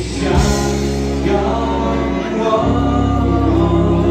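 Live country-rock band playing, with sung vocals over bass, drums and electric guitars; the bass shifts to a new note a little past halfway.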